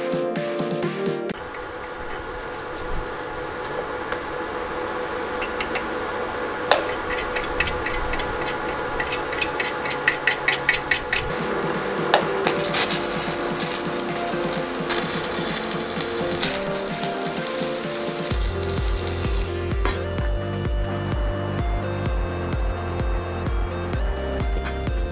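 Electronic background music over metalworking sounds. About ten seconds in there is a quick run of knocks. From the middle there is the hissing crackle of arc welding on a steel frame. A heavy bass beat comes in near the end.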